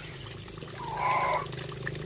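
Water pouring from a pipe spout onto rocks and over hands rinsing something in the flow. A brief high, pitched call sounds once about a second in.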